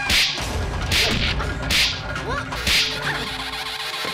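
Fight sound effects of a film brawl: four sharp whip-like swishes and blows, about one a second.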